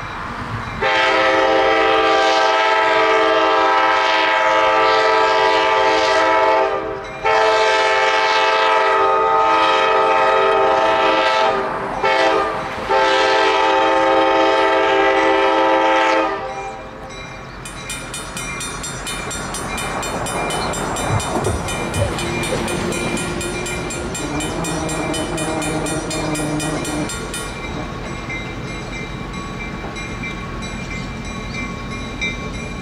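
EMD GP7 diesel locomotive's air horn sounding the grade-crossing signal: long, long, short, long. Afterwards, the quieter running of the locomotive and its train on the rails as it comes around the curve, with a high-pitched tone over it for about ten seconds.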